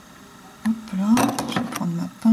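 A woman's voice speaking briefly in French, starting about half a second in, with a few faint clicks under it.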